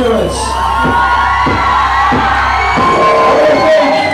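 Live metal band's amplified instruments holding sustained, slowly gliding tones over a steady low drone that cuts out a little before the end, with scattered shouts from the crowd.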